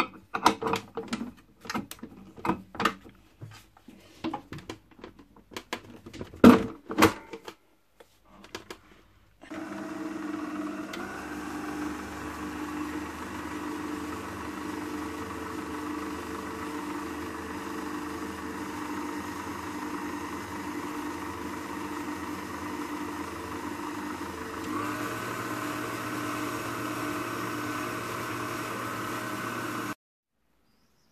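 Metal clicks and knocks as a flat beater is fitted to a stand mixer, then the mixer's motor runs steadily with the beater churning thick ground-meat filling in a stainless steel bowl. About five seconds before the end the motor's sound steps up, as at a higher speed.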